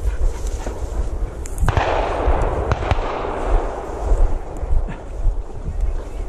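Wind rumbling on the microphone, with rustling and crunching footsteps through dry field weeds; a louder, longer rustle swells up about two seconds in.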